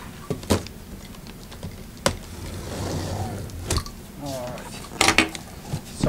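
Large cardboard projector box being handled and opened: several sharp knocks and taps on the cardboard, with scraping and rustling between them.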